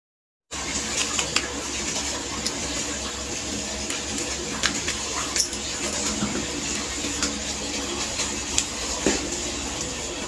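Small sharp plastic clicks and handling noises as the clip fan's inline cord switch housing is handled and pried open to check for a bad contact inside, over a steady low hum. The sound starts after a brief dead silence near the start.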